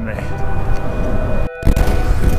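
Strong wind buffeting the microphone, a loud low rumble, on a bicycle riding into a hard headwind. The sound drops out briefly about one and a half seconds in, then the rumble resumes.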